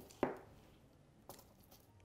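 A small hard object knocks sharply once against the work surface while paint is being handled, followed about a second later by a fainter click.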